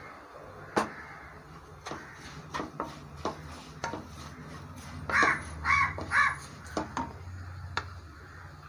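A crow cawing three times in quick succession about five seconds in, the loudest sound here. Before it come scattered clicks and scrapes of a wooden spatula stirring in a frying pan, over a low steady hum.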